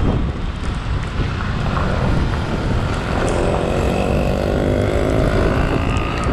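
Wind buffeting the microphone and road rumble from a moving two-wheeler on the road. About halfway through, a steady engine note joins in.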